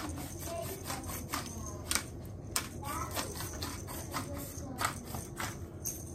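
Hand-twisted pepper mill grinding, a string of sharp, irregular clicks and crunches.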